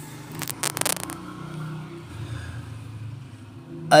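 Handling noise: a quick run of scraping and rustling in the first second as a hand comes onto the page of a printed Quran, followed by a faint low rumble.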